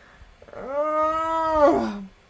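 A woman's drawn-out whining groan of exasperation, held on one pitch for over a second and dropping at the end.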